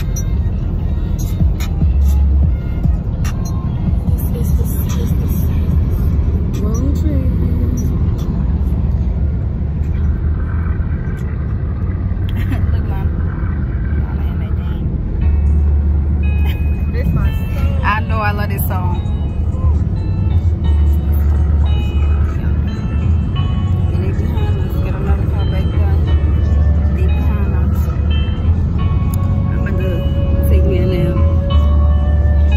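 Steady low road and engine rumble inside a moving car's cabin, with music and voices under it.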